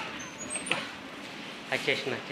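A man's voice, pausing briefly before speaking again near the end, over faint background noise, with a single click about a second in.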